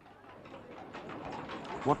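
A wash of street ambience fades in and grows steadily louder, with bird calls in it.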